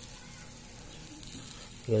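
Chicken pieces sizzling on a wire grill over hot charcoal embers: a steady, even hiss.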